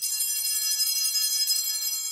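A cluster of small altar bells (sanctus bells) shaken, starting suddenly into a bright, jangling ring of several high bell tones that holds for about two seconds and then fades. Rung at the elevation of the consecrated host.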